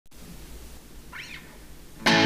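Low electric hum and hiss of a guitar amplifier idling before the first note, with one brief high chirp that rises and falls in pitch a little past the middle.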